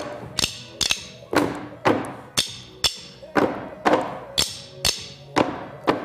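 Group drumming with sticks on padded milk-crate tops, in time with a backing music track: strong beats about twice a second with quicker double hits between.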